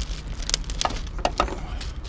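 Plastic packet of yoghurt rice cakes handled, giving several short crinkling crackles over a low steady rumble.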